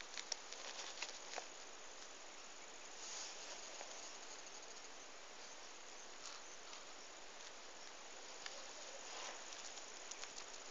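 Faint, steady chirring of field insects, with a few soft clicks in the first second and a half.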